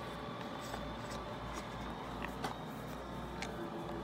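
A few light clicks from plastic drysuit valve parts being handled, over faint background music and a low hum.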